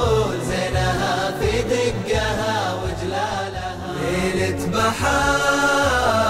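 Islamic nasheed: layered voices chanting a melody without words over a low vocal drone.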